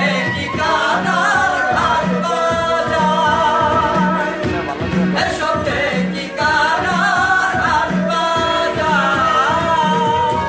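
A man singing a Bangla song live, held, wavering notes over an electronic keyboard and a steady beat about once a second.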